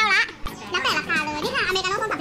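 High-pitched voices chattering, with no words clearly made out.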